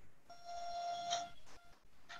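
A faint steady tone, held for about a second, then sounding twice more briefly.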